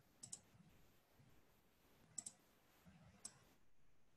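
Near silence: faint room tone with three soft clicks, one shortly after the start, one a little after two seconds in and one about a second later.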